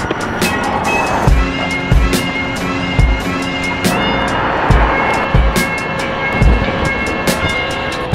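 Background music with a steady drum beat: a low kick about once a second under held chords and light ticking percussion.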